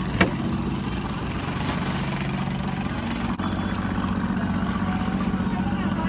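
Small boat's engine idling, a steady low hum, with a sharp click about a quarter second in.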